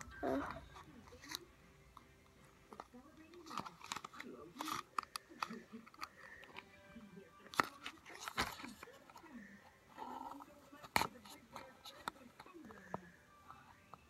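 A small cardboard jewelry gift box being handled and opened by hand: scattered clicks, scrapes and taps of fingers on the box, with a couple of sharper knocks in the second half.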